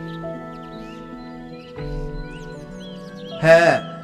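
Background music of held, steady synth tones with small high chirps scattered over it. Near the end a voice says the letter "फ".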